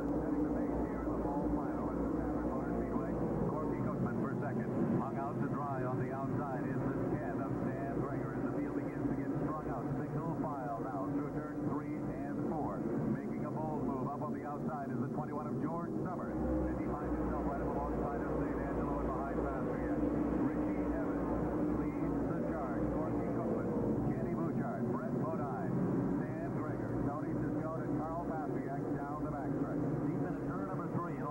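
A field of modified stock cars running together on the track, many engines droning and wavering in pitch at once, with crowd voices mixed in. It sounds muffled, with nothing in the highs.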